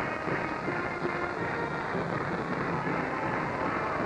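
Band music in the stadium, several held notes over a steady wash of crowd noise.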